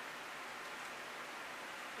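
Steady faint hiss of room tone, with no distinct events.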